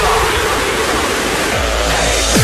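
Trance music at a breakdown: the kick drum drops out and a loud wash of white-noise sweep fills the mix.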